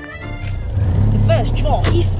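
Citroën 2CV's air-cooled flat-twin engine running, a steady low rumble heard from inside the cabin, coming in about half a second in as music ends.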